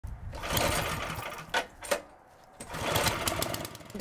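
Red snowblower being pull-started by its recoil starter: two pulls, each a rapid whirring rattle about a second long, with two sharp clicks between them.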